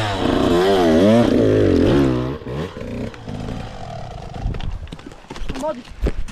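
Small two-stroke Husqvarna kids' dirt bike engine revving up and down repeatedly for about two seconds as the rider works the throttle on a steep rocky climb. It then drops away to a much quieter level.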